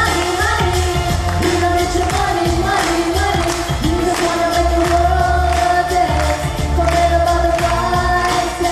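A singer performing a pop-style song into a microphone, with long held notes over an accompaniment that has a steady bass and beat.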